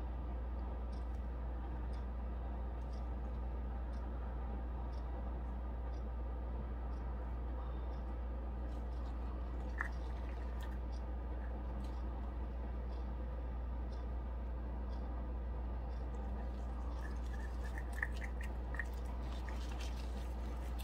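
Steady low hum of room tone, with a few faint, light clicks scattered through it and a little more often near the end.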